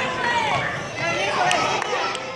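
Voices of children and adults calling out across a gym, over children's running footsteps on the hardwood basketball court. There are a couple of sharp clicks near the end.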